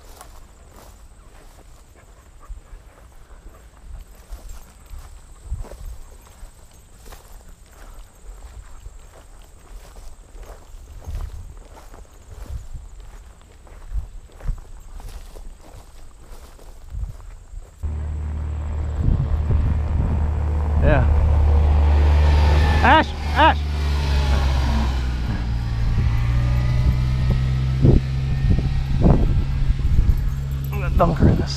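Footsteps striding through tall grass, a steady run of soft crunches. About two-thirds in, the sound cuts abruptly to a much louder steady low rumble with voices over it.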